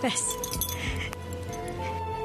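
Background score of a TV drama: a bright chiming shimmer with a few light clinks, then soft sustained tones entering about one and a half seconds in.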